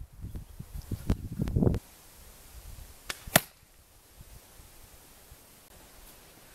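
A crossbow bolt striking a paper phone book: one loud, sharp impact a little over three seconds in, just after a fainter snap of the crossbow firing from 40 yards away.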